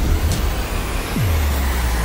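A car engine running, mixed with background music. A little over a second in, a low tone falls in pitch and settles into a steady deep hum.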